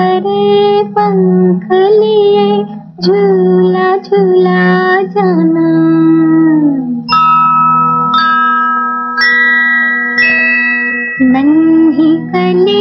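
Female playback singer's slow Hindi film lullaby over a low, steady accompaniment. About seven seconds in, the voice stops and four held instrumental notes sound, each starting sharply about a second apart. The singing resumes near the end.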